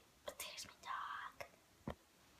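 A person's faint whispering in short breathy bits, with a short click near the end.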